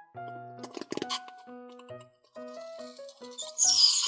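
Background music with a simple melody, then near the end a loud hissing splash as mouthwash is squirted out of a squeezed rubber toy figure into a plastic cup.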